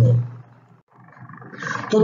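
A man's speaking voice trails off and drops briefly to near silence, then a rough, drawn-out vocal sound from the same man swells back up into speech.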